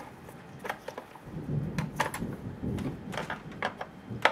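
Handling noise at a workbench: a string of sharp, light clicks and knocks at irregular spacing, with a low shuffling rumble starting about a second in.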